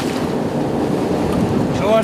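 Steady wash of wind on the microphone, sea and boat noise on the deck of an offshore fishing boat, with a voice starting near the end.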